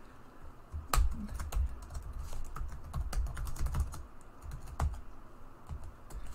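Computer keyboard being typed on: a run of keystrokes typing a short sentence, starting about a second in and stopping near the end.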